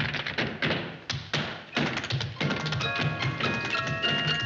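Tap dancing: rapid, crisp tap-shoe strikes on the floor over band music. About two and a half seconds in, the taps thin out as the band comes in with held notes.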